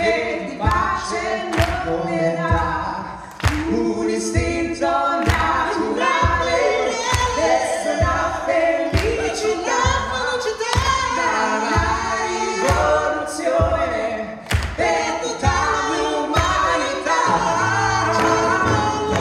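Live song sung by several voices in close harmony, in an a cappella style, over a steady low beat of about two strokes a second.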